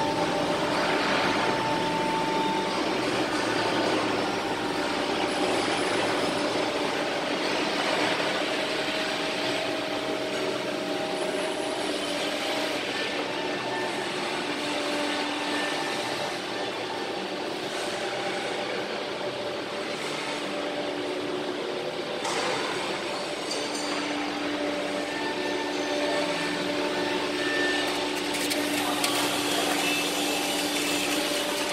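Steady machinery noise from a pit-type gas carburizing furnace installation: a motor's hum with several steady tones over a broad rushing noise, the tones shifting a little in pitch and strength partway through.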